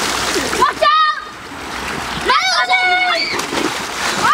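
Water splashing in a swimming pool as children thrash about, with a short high-pitched child's shriek about a second in and a longer shout in the middle.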